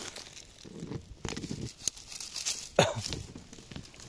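Dry grass and pine-needle litter crackling and tearing as a knife cuts at ground level and feet shift over it, with a few sharp snaps. A little under three seconds in comes a short, loud squeak that falls quickly in pitch.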